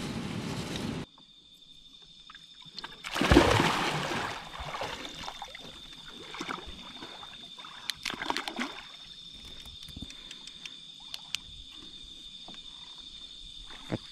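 Water sloshing and splashing around a small boat at night, loudest about three to four seconds in, with a few sharp clicks around eight seconds. A steady high-pitched drone of night insects runs underneath.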